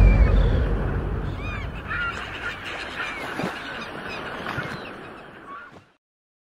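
Seaside sound effect: a deep rush of waves that starts loud and fades away over about six seconds, with seagull cries over it.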